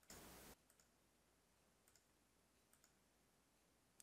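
Near silence, with a few very faint computer mouse clicks.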